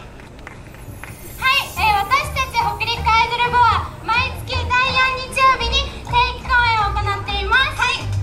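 Young women talking animatedly through handheld microphones over a PA system, starting about a second and a half in after a quieter opening.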